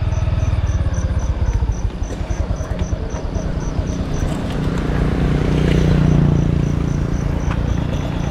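A low, steady engine rumble that swells a little after the middle. Above it, an insect chirps faintly and evenly, about three times a second.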